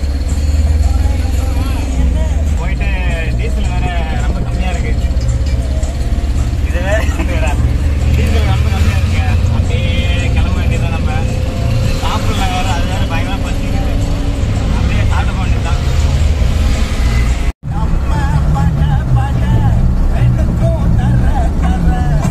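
Steady low engine and road rumble inside the cab of a moving Tata Ace mini truck, with voices talking over it. The sound cuts out completely for an instant about three-quarters of the way through.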